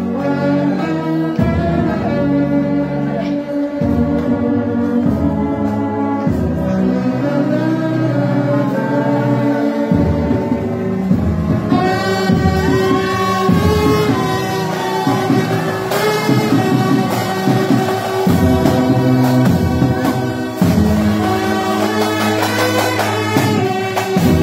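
A brass band of saxophones, euphoniums and tubas plays a tune in held, slowly changing chords. About halfway through the sound grows fuller and brighter.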